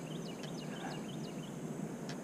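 Faint bird chirps: a quick series of short, high, falling notes, about three a second, over steady outdoor background noise.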